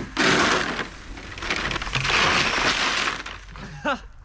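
Dry feed grain poured from a bucket in two long rushes into a plastic feed trough, partly over a bison's head and coat.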